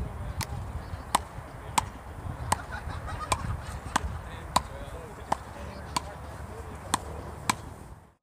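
Frescobol paddles hitting a ball back and forth in a steady rally: about eleven sharp knocks, one every half-second to second, over a steady low rumble.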